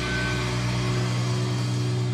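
Live heavy metal band's distorted electric guitars and bass holding one steady sustained chord as the song rings out, the deepest bass dropping away about a second in.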